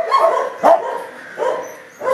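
Kennel dogs barking, a few separate barks roughly 0.7 s apart.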